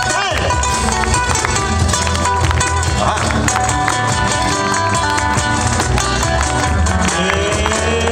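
Live band music with acoustic guitars and electric bass, played through PA speakers; a gliding melody line comes in near the end.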